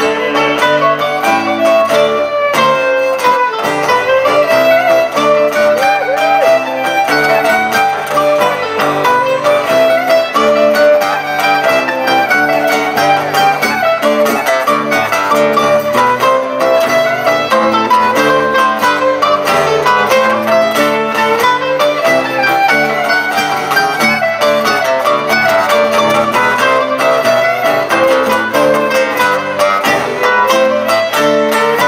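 Live acoustic folk band playing an instrumental passage with no singing: bowed fiddle, strummed acoustic guitar and mandolin playing together at a steady, even level.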